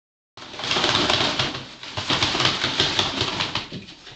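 A flexible corrugated plastic hose being swished and dragged across a vinyl floor, a loud rattling, scraping rush with many quick clicks, starting a moment in and dying away near the end.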